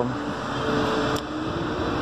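Steady outdoor background noise, an even hum with a faint held tone in the middle.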